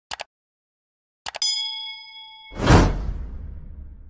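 Sound effects for an animated subscribe button: a quick double mouse click, then another click and a bell-like ding that rings for about a second, then a loud whoosh that fades away.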